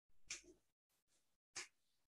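Near silence in a pause of a man's talk, broken by two faint short breath sounds, one about a third of a second in and one at about a second and a half.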